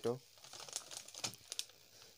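Plastic packets crinkling faintly as they are handled, with a few small sharp crackles.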